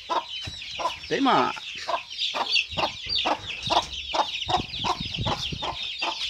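A brood of Jersey Giant (gigante negro) chicks peeping continuously in a dense high-pitched chorus, while their bare-necked mother hen clucks in short, low notes about three times a second.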